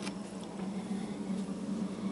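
A steady low hum, with a light click right at the start and a couple of fainter ticks later.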